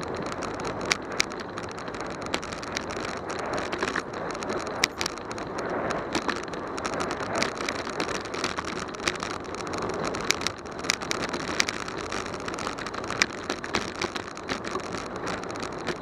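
Bicycle rolling along a paved street, heard through a camera mounted on the bike: a steady rush of wind and tyre noise with frequent sharp clicks and rattles as it goes over bumps.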